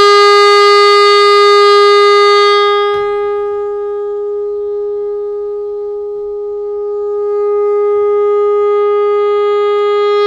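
Alto saxophone holding one long note at a steady pitch. It grows softer and thinner about three seconds in, then swells back up around seven seconds.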